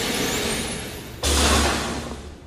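A hissing whoosh that swells with a rising sweep, then a sudden loud, deep boom just past a second in that holds briefly and fades.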